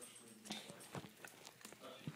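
A dog licking and smacking its lips, faintly, working peanut butter off its nose, with a few short wet clicks about half a second and one second in.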